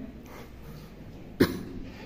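A single short, sharp cough about a second and a half in.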